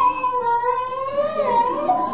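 A young child crying in one long drawn-out wail. The pitch holds, dips about one and a half seconds in, and rises again. It is heard as a video played over a hall's loudspeakers.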